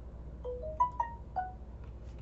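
An electronic notification chime: a short tune of five clear notes that steps up in pitch and then back down, lasting about a second.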